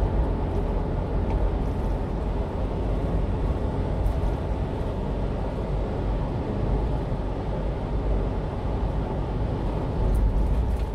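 Steady low road and engine rumble of a 1-ton refrigerated box truck cruising on an expressway, heard from inside the cab.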